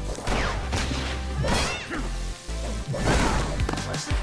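Cartoon fight sound effects: a string of hits, crashes and whooshes over background music.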